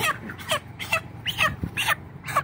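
Young broiler chickens peeping: about five short, high cheeps roughly half a second apart.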